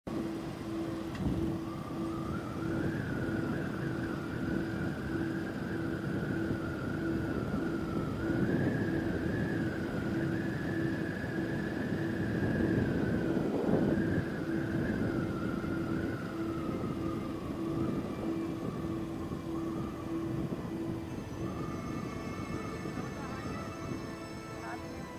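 Motorcycle riding along a road with wind rushing over the microphone, a whistling tone that drifts up and down in pitch, and a low tone pulsing on and off at an even rate.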